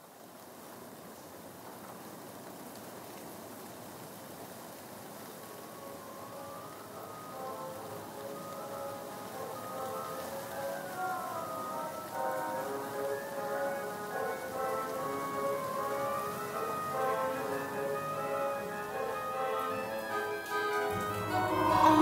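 Song intro: a steady rain sound effect with a melody of short, stepping notes fading in over it and growing steadily louder.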